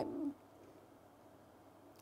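A woman's voice trailing off in a short low hum at the very start, then near silence: room tone.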